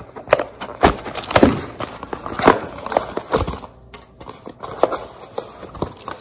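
A small paperboard box being opened and handled: irregular knocks, scrapes and rustles of the cardboard, with a few sharper clicks.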